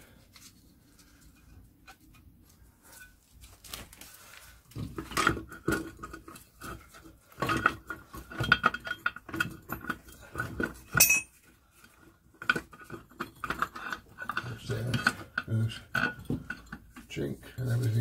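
Metal parts of a Land Rover Series transfer box clinking and knocking as the front output housing and its spring-loaded selector rod are worked off the casing by hand. The clatter starts about four seconds in, with a faint ring of steel and one sharp high click about eleven seconds in.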